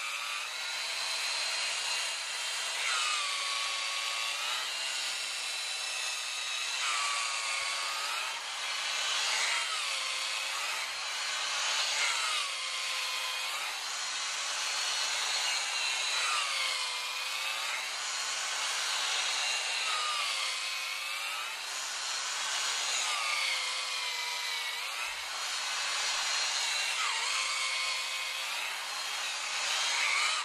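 Electric drill driving a spiral auger stirrer through a bucket of crystallising honey, stirring it so it sets fine-grained. The motor runs continuously, its pitch dipping and recovering about every two seconds.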